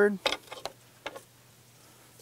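A few light clicks and knocks in the first second or so as a chainsaw's bar is slid down into its scabbard mount and settles in place.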